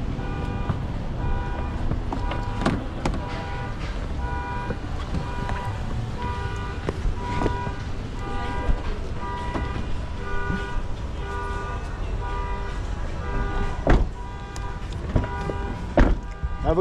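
A car's warning chime beeping over and over at a fixed pitch while the door stands open, over the low hum of the engine idling. About fourteen seconds in, a car door shuts with a thud.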